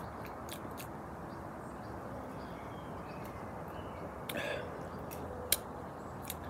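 Mouth sounds of a person tasting beer: a few soft lip smacks and small clicks over a quiet steady background hiss, with one sharper click near the end.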